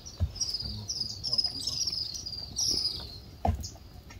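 Wild animal calls: a run of short, high, falling chirps, about three a second, that stops about three seconds in. Two dull knocks sound over it, one just after the start and one near the end.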